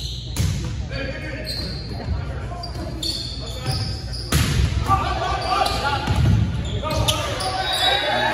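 Volleyball rally in a gymnasium: the ball is struck several times, a serve near the start and a loud hit at the net about four seconds in, each echoing in the hall. Players shout and call during the second half.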